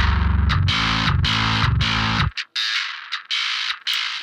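Djent bass riff played back through FabFilter Saturn 2 multiband saturation set to Warm Tube, in choppy rhythmic chugs with a distorted growl in the upper range. A little over two seconds in, the low end drops out, leaving only the saturated highs.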